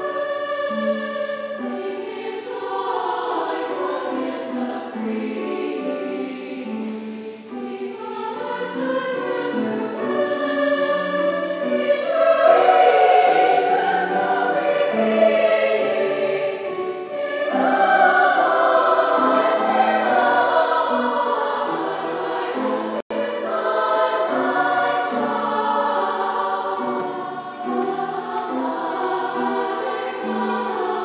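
Large choir singing, growing louder through the middle of the passage. The sound cuts out for a split second about three-quarters of the way through.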